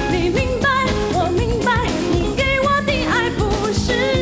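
A woman singing a Mandarin pop song over a dance-pop backing track, her held notes wavering with vibrato.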